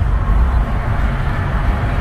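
Inside the cabin of a Nissan Kicks cruising at about 60 km/h: a steady low rumble of road and engine noise.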